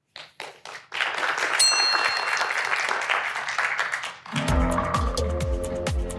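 Audience applause: a few scattered claps, then steady clapping from a full hall. About four seconds in it cuts to music with a steady beat.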